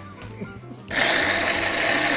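Small electric blender switched on about a second in, running steadily as it chops raw cauliflower into fine crumbs.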